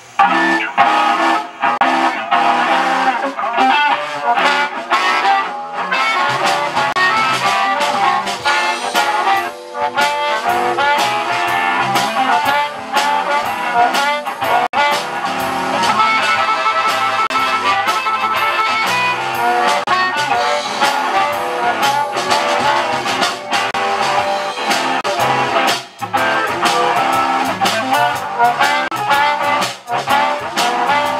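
A live band kicks in at once with an instrumental: harmonica lead over electric guitar, bass, drums and keyboard.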